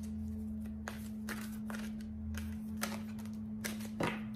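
A deck of oracle cards being shuffled by hand: a string of irregular short snaps and riffles, over a steady low hum.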